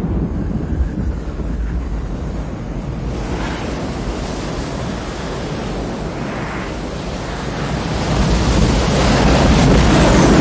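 Film sound effects of a giant tsunami wave: a steady rush of surging water and wind over a low rumble, growing louder near the end as the wave approaches.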